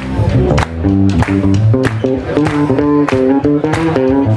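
Live blues band playing electric guitars over drums that keep a steady beat.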